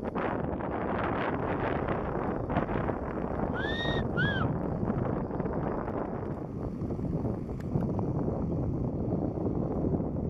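Strong gusty wind buffeting the microphone, a steady rushing noise. About four seconds in come two short whistles that rise and then fall in pitch.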